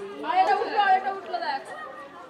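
Indistinct chatter of people's voices, with no clear words.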